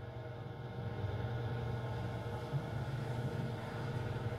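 Steady low hum of a small room's background, fairly faint, with no speech or clear music.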